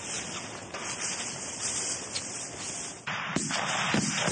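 Steady hiss of outdoor noise with no distinct event. It dips briefly about three seconds in, then comes back louder and rougher.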